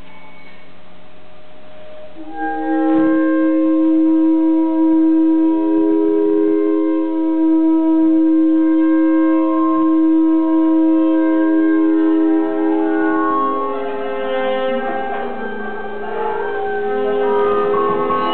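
Free-improvised music for saxophone, a second woodwind and laptop electronics. A long steady low tone comes in about two seconds in, with held higher tones above it. In the last few seconds it breaks into denser, shifting tones.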